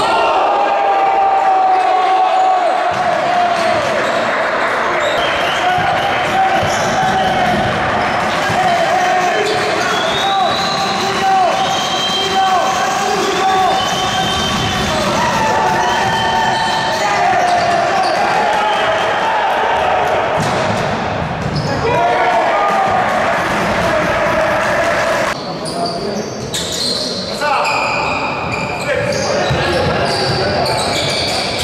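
Live basketball play on a wooden gym court: the ball bouncing as it is dribbled, sneakers squeaking, and players and coaches calling out, all echoing in the hall.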